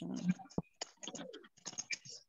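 Computer keyboard keys clicking in a quick run of taps as a word is typed, with a faint low, muffled sound under them about a second in.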